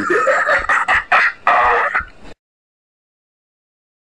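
A loud, choppy, voice-like sound that cuts off abruptly a little over two seconds in.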